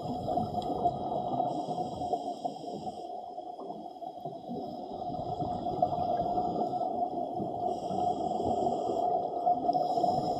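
Underwater ambience picked up by a submerged camera: a steady muffled rush with a constant hum. A thin high whine comes and goes twice.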